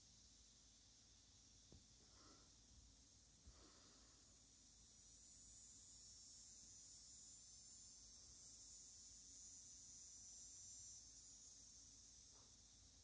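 Near silence: faint room tone with a steady high hiss that swells a little in the middle, and a couple of faint ticks in the first few seconds.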